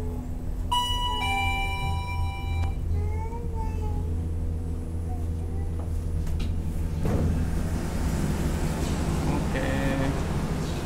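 Lift arrival chime: a two-note ding-dong about a second in, a higher tone followed by a lower one, over a low steady hum.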